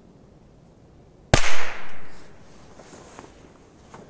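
A Korsar-1 firecracker exploding: one sharp bang about a second in, with a short echo dying away after it.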